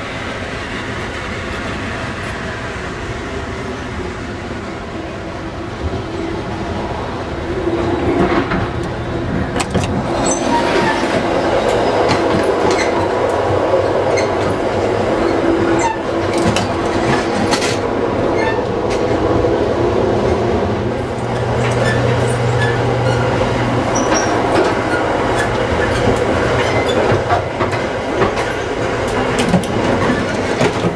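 Amtrak passenger train running, heard from inside the cars: a steady rumble of wheels on rail. It grows louder from about eight seconds in, with rattles and sharp clicks as the passage between cars is reached.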